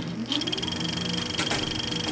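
Film projector running: a rapid, even mechanical clatter with a steady high whine, starting suddenly.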